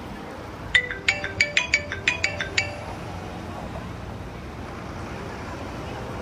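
A phone ringtone plays: a quick melody of about ten bell-like chiming notes lasting about two seconds, starting just under a second in, over a steady hum of city traffic.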